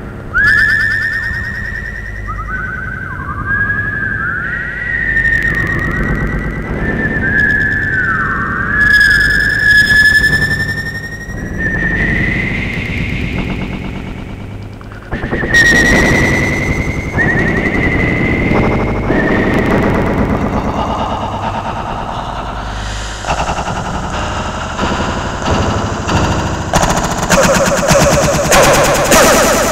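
Experimental electronic music: whistle-like tones swooping down and back up again and again over a fast rattling pulse. The texture thickens suddenly about halfway through and ends with louder regular pulses.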